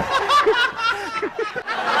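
Several people laughing, in quick repeated bursts that overlap.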